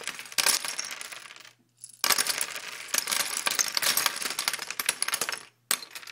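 Dense clinking and rattling of many small hard objects tumbling together, like coins or small pieces being poured or shaken. It comes in two long runs with a short break about a second and a half in, then stops briefly and starts again near the end.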